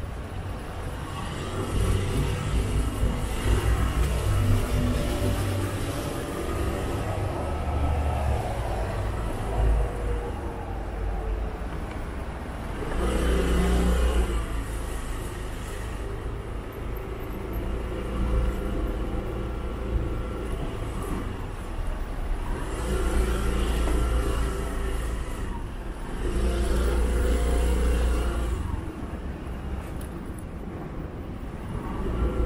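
Road traffic on a city street: motor vehicles passing one after another, each swelling and fading over a few seconds, loudest about halfway through and again near the end.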